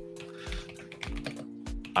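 Computer keyboard typing, quick scattered clicks, over background music with held chords and a steady beat of about two thumps a second.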